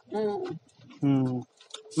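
A person's voice making two short wordless hum-like sounds, each about half a second long and falling slightly in pitch, one at the start and one about a second in.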